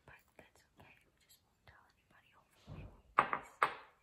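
A woman's soft whispering or murmuring: faint scattered mouth sounds and clicks at first, then a short, louder voiced sound about three seconds in.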